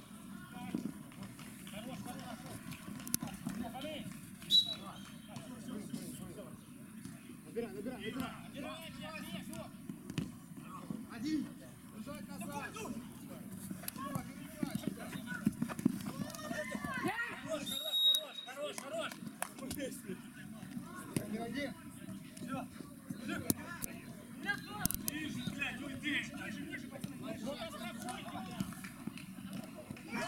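Players' voices calling and shouting across a futsal pitch during play, with occasional sharp knocks of the ball being kicked.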